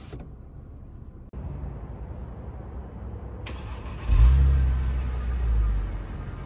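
2007 Mercedes-Benz E350's 3.5-litre V6 exhaust running with a steady low note, then rising sharply and loudly about four seconds in, a deep sound that eases off over the next two seconds.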